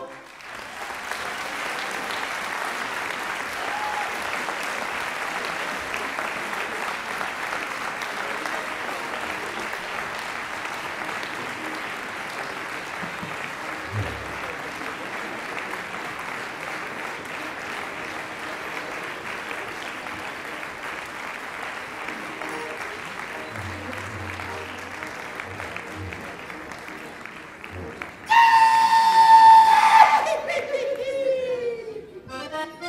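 Audience applauding steadily for nearly half a minute. Near the end an accordion starts playing loudly.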